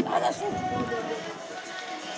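Indistinct voices of people talking in the background, with a short knock right at the start.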